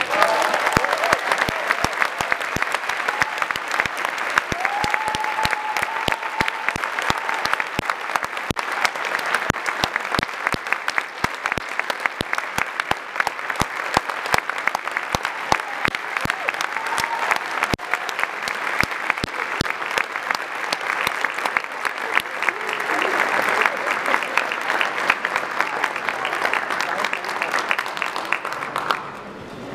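Concert-hall audience applauding steadily at the end of a piano concerto, with a voice calling out from the crowd about five seconds in.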